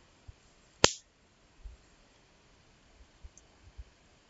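A single sharp click a little under a second in, over quiet room tone, with a few faint low thumps later.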